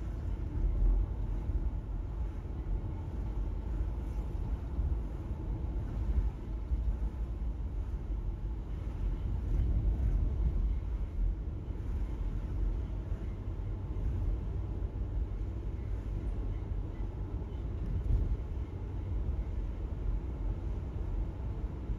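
Steady low rumble of road and engine noise heard inside the cabin of a car driving along a highway.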